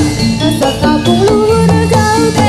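Javanese jathilan accompaniment music: struck metallophones and hand drums keep a busy rhythmic pattern, with a sliding melody line held over them.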